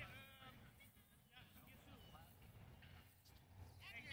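Faint, distant people's voices, with one short high-pitched call or shout right at the start.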